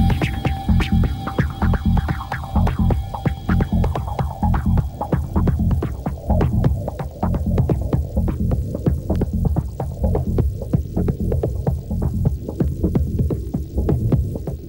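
Electronic dance music in a DJ mix: a pulsing bass line under a steady run of hi-hat ticks. A high held synth tone fades out in the first few seconds, leaving only bass and percussion.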